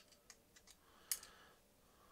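Faint, light clicks of hex bits being worked back into the handle of a Kershaw DIY Shuffle pocket knife with a gloved hand: about five small clicks, the sharpest a little over a second in.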